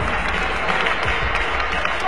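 Audience applauding, with music playing underneath.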